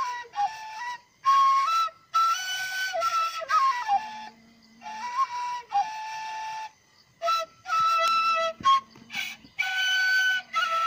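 Self-made side-blown bamboo flute playing a slow melody in short phrases, held notes stepping up and down with brief pauses for breath between phrases.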